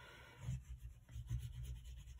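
Oil pastel rubbing across paper as lines are coloured in: a faint run of short scratchy strokes that starts about half a second in.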